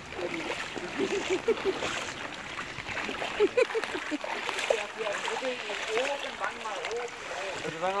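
Shallow floodwater sloshing and splashing around bare feet wading through it, with scattered short splashes.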